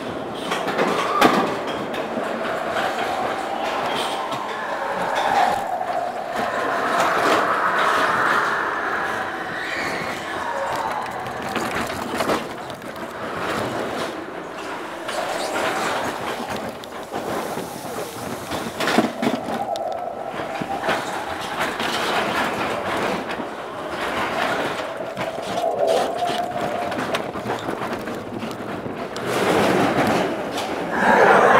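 Matterhorn Bobsleds roller-coaster car running along its track: a steady rolling rumble with short knocks.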